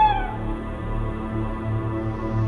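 Low, steady background music drone of a horror-comedy score. At the very start it is joined by the end of a high, wavering cry that dies away within a fraction of a second.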